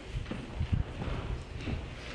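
A man's footsteps, a run of short low thumps, as he gets up and walks across the chancel floor.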